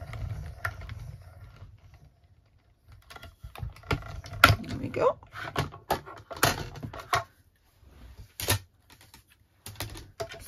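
Hand-cranked mini die-cutting machine rolling its plates through for the first couple of seconds, then a run of irregular plastic clicks and clacks as the cutting plates are pulled out and handled.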